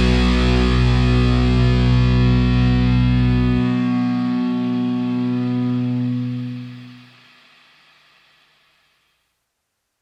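Heavy metal song's final distorted electric guitar chord, with bass, ringing out. The lowest notes drop out about three and a half seconds in, and the chord fades to silence about seven seconds in.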